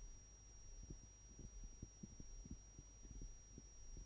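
Near silence: a faint low hum and a thin steady high whine, with soft irregular low thumps.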